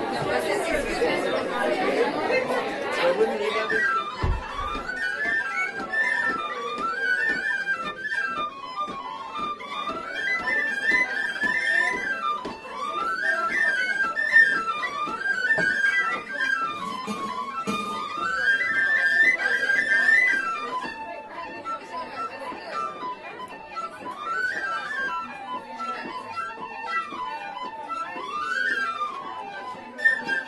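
Crowd chatter in a pub for the first few seconds. Then tin whistles start playing an Irish traditional tune about four seconds in, a quick melody running up and down that carries on to the end.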